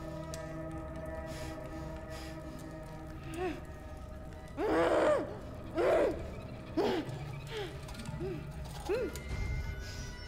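A sustained music drone, joined from about three seconds in by half a dozen short muffled cries from a woman gagged with tape, each rising and falling in pitch, the loudest about halfway through.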